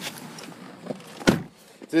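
A single short knock about a second into a quiet stretch inside the car, then a man's voice starting to speak at the very end.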